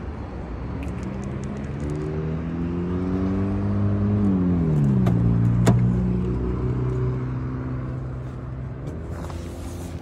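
A motor vehicle passing by: its engine grows louder, drops in pitch as it goes past about halfway through, then fades away. A sharp click comes near the middle, about when a car door is opened.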